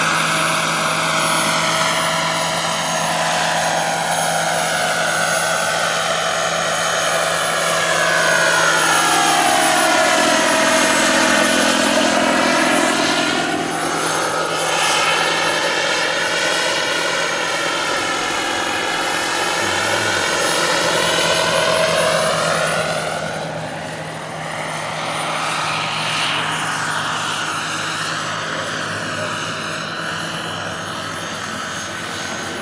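RC scale-model Eurocopter EC120 Colibri turbine helicopter in flight: a steady high turbine whine over the rotor noise. A swishing, phasing sweep falls and rises again as the model moves about, and the sound grows fainter near the end as it flies farther off.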